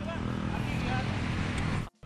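Steady rushing noise of a bicycle converted to electric drive, powered by a car alternator turned into a brushless motor, as it goes past at speed. The sound cuts off suddenly near the end.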